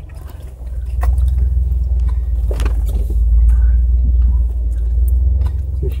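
A Jeep's engine running with a low, steady rumble as it creeps along a rough trail, growing louder about a second in, with scattered light clicks and knocks over it.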